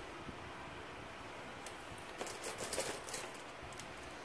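Faint light clicks and rustling as a Parker Jotter ballpoint is handled and laid down on a plastic sheet, in a scatter over the second half.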